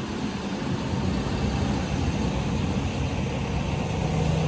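Steady hum of street traffic with a vehicle engine running nearby.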